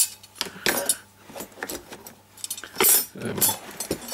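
Metal earth-ground test stakes clinking and clanking against each other as they are handled and laid into their carrying case, with a loudest clank about three seconds in.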